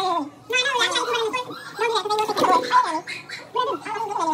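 Indistinct speech: voices talking in short, rapid phrases, with words too unclear to make out.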